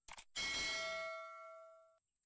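Subscribe-button animation sound effect: a quick double mouse-click, then a bright notification-bell ding that rings on and slowly fades before cutting off suddenly.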